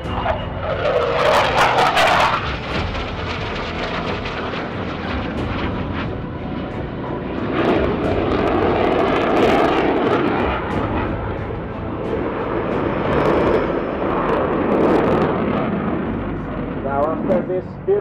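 Jet noise from a Spanish Air Force F/A-18 Hornet's twin F404 turbofans in display flight, swelling and fading in waves, with a shifting, sweeping tone as the jet moves across the sky. It is loudest about a second in and again around eight to ten and thirteen to fifteen seconds in.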